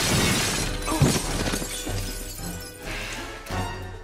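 Glass panes shattering in a loud crash, with a sharp impact about a second in, the crash fading over the next couple of seconds beneath dramatic film score music.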